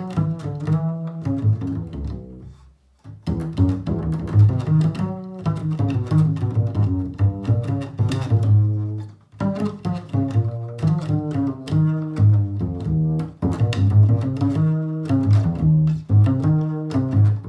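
Upright double bass played pizzicato: a steady stream of plucked notes, several a second, with a short pause about three seconds in and a brief dip near nine seconds.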